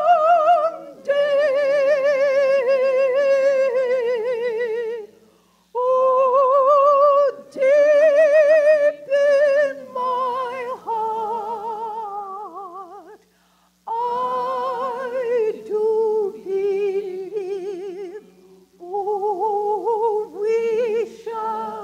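A woman singing a spiritual solo in a trained, operatic voice with wide vibrato. She holds long notes in phrases of a few seconds, with short breaks between them.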